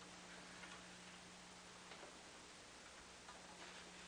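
Near silence: an even hiss and a steady low hum, with a few faint scattered clicks.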